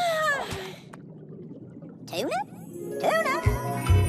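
A cartoon creature's wordless squeaky call that slides down in pitch, then a short one that slides up. About three seconds in, a tinkling music cue with a regular bass beat starts.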